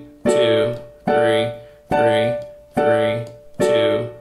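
Digital piano playing a D major triad as block chords, stepping through its inversions: five chords struck about 0.85 s apart, each fading before the next.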